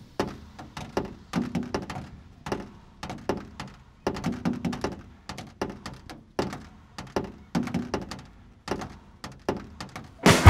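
Irregular run of short knocks and thuds, a few each second, some carrying a brief low hum, forming the sparse percussive opening of an indie-electronic track.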